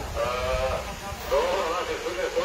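A person's voice crying out in two drawn-out, quavering wails over a low background rumble.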